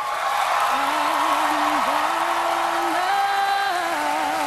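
Theatre audience applauding and cheering after a musical number ends. About a second in, instruments enter, holding soft sustained notes that step up in pitch near the end as the next song begins.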